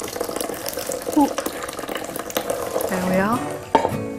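Hot cooked peel and water being poured into a cloth jelly bag, the liquid splashing and streaming through into the bowl below.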